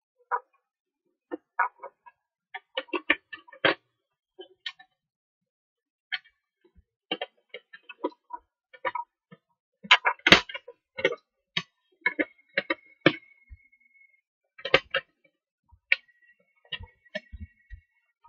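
Thin metal bottom cover of an Acer CXI Chromebox mini PC being pressed and seated onto its case by hand: irregular clicks, taps and light scrapes of metal on plastic, loudest in a quick cluster about ten seconds in. A faint high steady tone sounds briefly twice in the second half.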